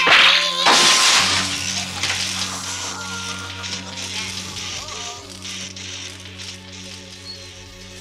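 Two loud blasts less than a second apart, the second trailing off slowly into a hiss, over a low sustained film-score drone.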